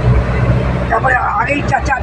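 Steady low drone of a car's engine and road noise heard from inside the moving car's cabin, with a voice speaking over it in the second half.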